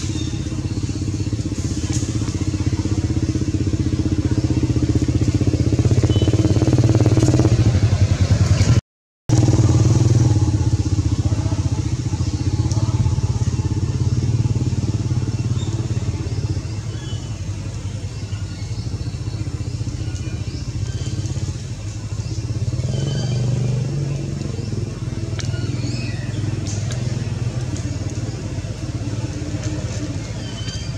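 A steady low engine drone, swelling over the first several seconds and easing off in the second half, with a brief cut to silence about nine seconds in.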